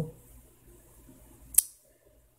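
A single sharp click about one and a half seconds in, against faint room tone.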